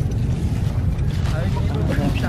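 Wind buffeting the microphone: a steady low rumble, with faint voices in the background.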